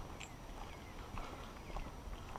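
Footsteps of a person walking along a dirt forest trail covered in dry leaves, with a knock at each step.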